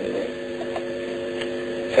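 A steady hum of several held low tones in the background of the recording, with no speech over it.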